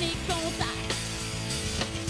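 Pop-rock song: a woman singing lead over electric guitars and a steady drumbeat.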